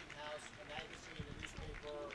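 Faint, distant speech: an audience member asking a question away from the microphone, hard to hear.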